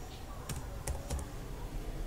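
Computer keyboard being typed on: a few separate, slow keystrokes a few tenths of a second apart.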